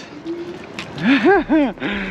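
A man laughing: three short rising-and-falling laughs about a second in.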